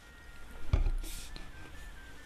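Trumpet played with an old Harmon mute: a string of faint high notes stepping from pitch to pitch. There is a low thump about a second in.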